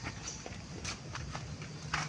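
Footsteps on a hard tiled path: a series of irregular light clicks, a few each second, with a slightly louder one near the end.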